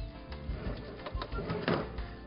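Soft background music with faint handling sounds from the kitchen counter.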